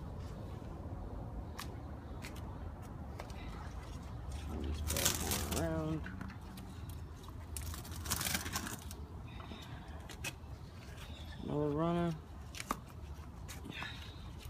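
Strawberry leaves rustling as a hand parts the foliage, with scattered light clicks and two brief louder rustles about five and eight seconds in. A person's voice sounds briefly twice, midway and near the end.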